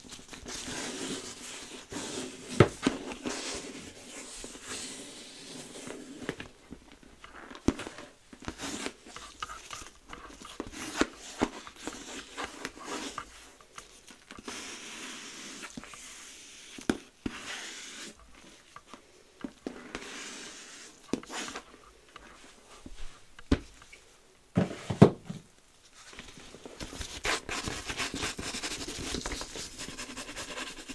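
Gloved hands and a small white plastic device rubbing, scratching and tapping over a leather handbag: irregular close-up handling sounds with scattered taps, two of them louder, about two and a half seconds in and about five seconds before the end.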